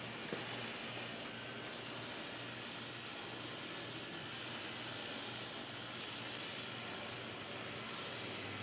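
Quiet, steady running of Bachmann N-gauge Peter Witt DCC model streetcars on their track: an even hiss with a faint, wavering low hum.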